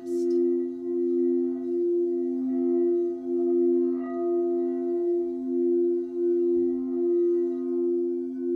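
Quartz crystal singing bowls sung with a mallet around the rim: two steady low tones held together, swelling and fading in a slow pulse a little faster than once a second.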